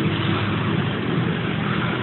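Steady background noise of road traffic, an even hum with no distinct events.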